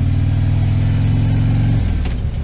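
Harley-Davidson touring motorcycle's 45-degree V-twin engine running under way, with wind and road noise over it; the engine note drops near the end.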